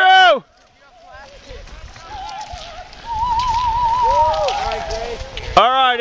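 Spectators shouting and cheering for cross-country ski racers. A loud close shout opens it, fainter drawn-out cheers carry on in the middle, including one long held call, and another loud close shout comes near the end.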